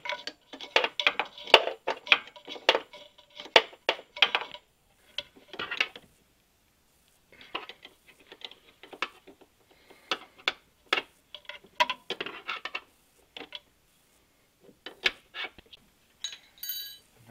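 Irregular clusters of metallic clicks and clinks as a brass hose fitting is handled and threaded onto the top of an aluminium bypass oil filter housing. Busiest in the first few seconds, with a short silent stretch near the middle.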